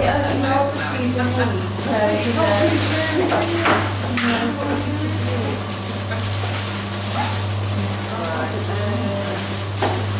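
Background chatter of several people talking over a steady low electrical hum, with a few short clicks from handling packaging at the tables.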